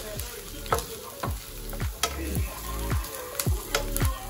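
Diced onions sizzling in a stainless steel frying pan as a silicone spatula stirs them. Under it, background music with a steady beat of deep drum hits, about two a second.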